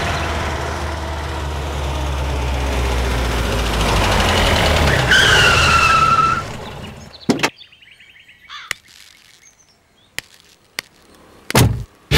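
A car engine running steadily, with a short falling squeal as the car comes to a stop. The engine then goes quiet, and a few sharp knocks follow, the loudest like a car door shutting near the end.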